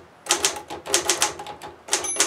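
Manual desktop typewriter being typed on, the keys striking in a quick, fairly even run of clacks at about five a second, starting after a brief quiet at the very beginning.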